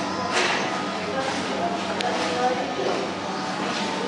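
Background chatter of several workers talking at once in a large hard-walled work room, with a sharp click about halfway through.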